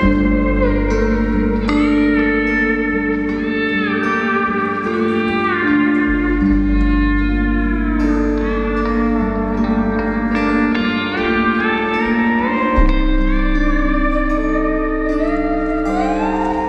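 Lap steel guitar playing a sliding, gliding melody over a live rock band, with sustained bass notes, guitars and drums underneath.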